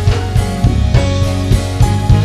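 Live band playing: a drum kit keeps a steady beat under sustained keyboard chords.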